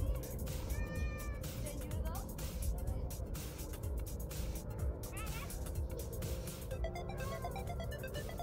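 Wind buffeting the microphone outdoors, a constant uneven rumble, under distant voices and faint music, with a few short high calls about a second in and again around five seconds.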